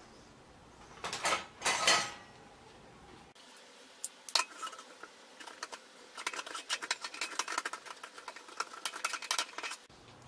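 Metal spoon scraping and clinking against a small ceramic bowl while mashing a chicken bouillon cube to dissolve it. Two scrapes come about one and two seconds in, then a fast run of clinks from about halfway until near the end.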